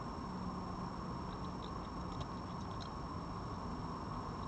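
Red fox eating dry food from a bowl: a scatter of faint crunching clicks in the middle, over a steady hiss and low hum.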